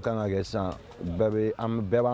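A man's voice in two drawn-out phrases, the second starting a little over a second in.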